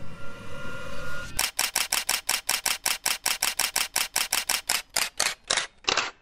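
Camera shutter sound effect firing in a rapid burst of sharp clicks, about six a second, starting just over a second in as the music drops away; near the end the clicks grow duller and further apart.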